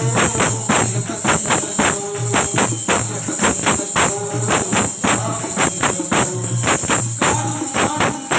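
Tambourine struck and jingled in a steady rhythm, about three strokes a second, accompanying a man singing a devotional bhajan through a microphone.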